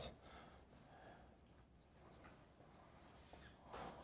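Faint dry-erase marker strokes on a whiteboard: soft scratching, with a slightly louder stroke near the end.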